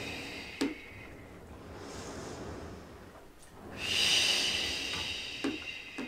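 A woman's audible breathing during a Pilates stretch: a soft breath in the first half, then a long, breathy exhale starting about four seconds in, the breath out that goes with pressing the reformer carriage out.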